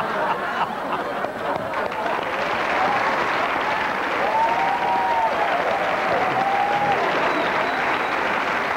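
Studio audience applauding and laughing after a joke's punchline, keeping a steady level throughout.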